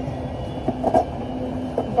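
Steady low machine hum of a warehouse, with a few short handling knocks and rustles about a second in and near the end.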